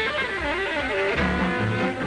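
Instrumental break of a country-western song played by a string band: a melody line slides up and down while the plucked bass drops out, then comes back in about a second in.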